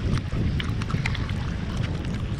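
Wind buffeting the microphone with a steady low rumble, with scattered short sharp ticks throughout.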